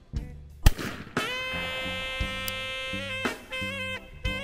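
A single shotgun shot at a trap station, sharp and loud, a little over half a second in. About a second in, background music starts with one long held note over a low repeating beat.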